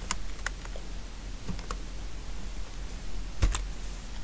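Keystrokes on a computer keyboard. There are a few quick clicks at the start, a couple more about a second and a half in, and a single louder click about three and a half seconds in.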